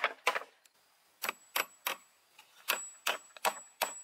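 Claw hammer driving nails into wooden poles: sharp taps in short groups, two, then three, then four.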